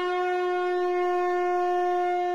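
A conch shell (shankha) blown in one long, steady note.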